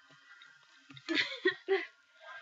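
Near quiet for about a second, then a person's voice in three short bursts of sound with no clear words.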